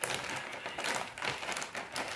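A clear plastic packaging pouch crinkling and rustling in irregular bursts as it is handled and opened by hand.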